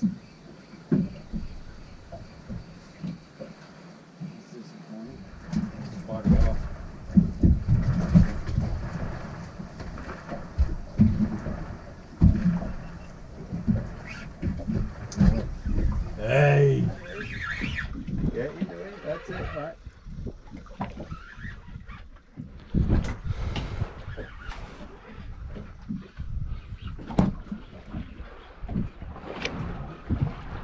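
Wind and water noise aboard a small fishing boat drifting at sea, with irregular knocks and thumps, and a brief indistinct voice about halfway through.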